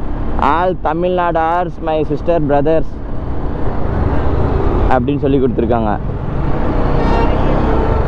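Steady wind and road noise from a motorcycle riding in city traffic. A man talks over it for the first few seconds and again briefly about five seconds in.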